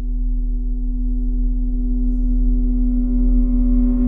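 A steady, sustained electronic drone tone of one held pitch with a deep hum beneath it, slowly growing louder.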